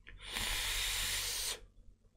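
A draw on a vape's dripping atomizer, built with series-wired nichrome 80 coils: a steady hiss of air and vapour rushing through the atomizer that lasts just over a second and cuts off sharply.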